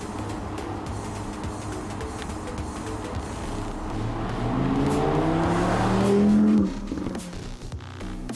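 Audi R8 Spyder's V10 accelerating hard: its note rises steadily in pitch and grows loud over about two seconds, then cuts off abruptly about two-thirds of the way in. A music bed runs underneath.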